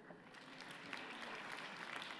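Audience applause, a dense patter of many hands clapping, starting faintly and filling out about a second in.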